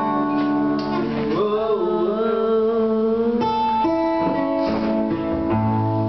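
Acoustic guitar strummed in full chords that ring out and change every second or so, with a long wavering sung note held through the first half.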